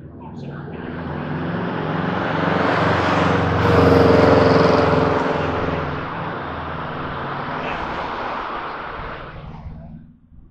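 A car passing on the street: engine and tyre noise swells to a peak about four seconds in, then eases to a steadier level and drops away sharply at the end.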